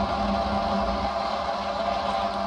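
Homemade waste-oil heater burning with its door open: a steady rush of flame over a constant hum, the flame running at about 650 degrees.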